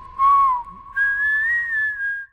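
A short whistled tune of a few clear notes: a lower note that bends briefly, then a higher note held from about halfway through, rising slightly.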